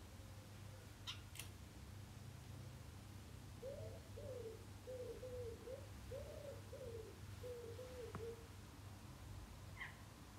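A dove cooing: a phrase of several soft, low hoots starting about three and a half seconds in, over a steady low hum. A small bird gives a brief high chirp about a second in.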